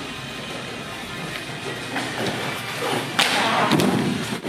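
Thuds of bodies landing on padded crash mats during taekwondo throwing practice, a few of them toward the end.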